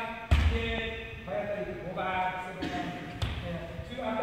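One sharp strike with a heavy thud on the gym floor about a third of a second in: a kendo demonstration hit, a shinai strike with a stamping step. Men's voices run around it.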